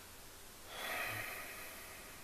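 A single audible breath from a man, a noisy rush of air a little under a second in that lasts about half a second and fades out.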